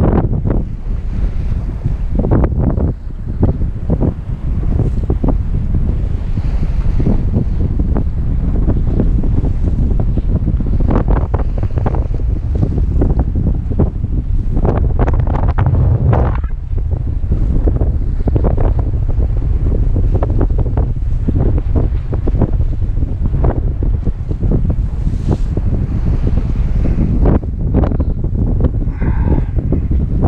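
Strong wind buffeting the microphone, a heavy low rumble with irregular gusts, over waves washing against rocks.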